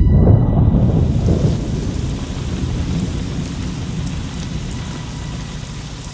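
Thunder rumbling low and slowly dying away, over a steady hiss of rain.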